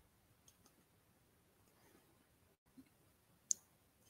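Near silence with a few faint, scattered clicks; the sharpest comes near the end.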